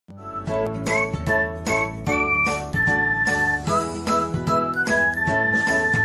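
Upbeat intro music: a bright melody of short, sharply struck notes over a steady beat, starting right at the beginning.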